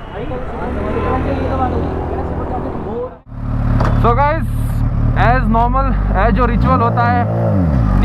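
Kawasaki H2 SX's supercharged inline-four motorcycle engine idling steadily, then given a few throttle blips near the end, the revs rising and falling each time. Men's voices talk over it.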